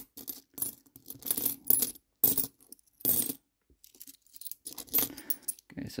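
Hong Kong coins, mostly one-dollar coins, clinking against one another as they are picked out of a pile and stacked in the hand. Irregular clusters of metallic clinks, fainter in the last couple of seconds.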